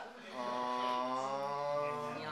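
A person's voice holding one long, steady vocal note, like a drawn-out chant or hum, starting about half a second in.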